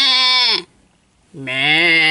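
A voice holding two long, drawn-out, wavering cries with no music behind them. The first slides down in pitch and stops about half a second in. The second, lower cry starts about a second and a half in.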